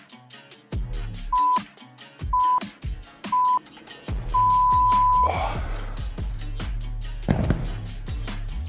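Workout interval timer counting down: three short steady beeps about a second apart, then one longer beep, over background music with a beat. The beeps mark the end of a timed interval and the switch to the next exercise.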